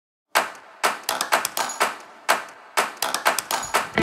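After a brief dead silence, a run of sharp clicks or hits in an uneven rhythm, several a second, each dying away quickly.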